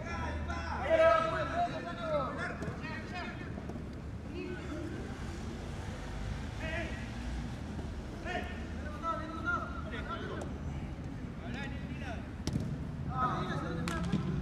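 Footballers' voices calling and shouting during play, in scattered bursts, the loudest about a second in. A single sharp knock comes near the end.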